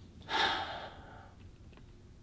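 A person sniffing in once through the nose, about half a second long, smelling fabric held against the face.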